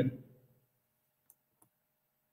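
A man's voice trails off, then two faint, short clicks a fraction of a second apart in an otherwise quiet room.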